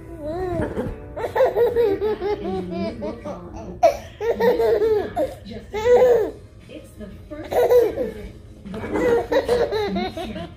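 A toddler laughing in repeated bursts.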